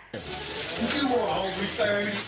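Indistinct voices talking over steady room noise in a home video, starting abruptly just after an edit.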